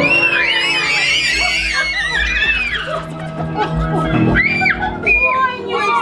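Many young children shrieking and squealing together in playful excitement as they flee a chaser in a game, densest in the first three seconds with a few more squeals later, over background music.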